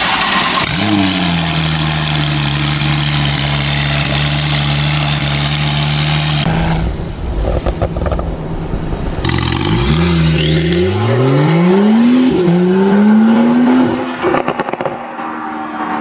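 Porsche 991.2 Carrera S 3.0-litre twin-turbo flat-six, breathing through a valvetronic catback exhaust and catless downpipes, cold-started: it flares up and settles into a steady fast idle for about six seconds. After a cut, the car accelerates hard with the revs climbing, dropping at an upshift and climbing again.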